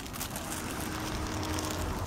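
Outdoor ambient noise: a steady low rumble and hiss, with a faint thin hum through the middle.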